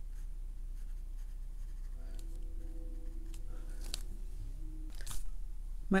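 Quiet room tone with a steady low hum, under faint dabbing of a watercolor brush on paper. A faint held tone comes in for a couple of seconds mid-way, and two short taps sound about four and five seconds in as the brush goes back to the palette.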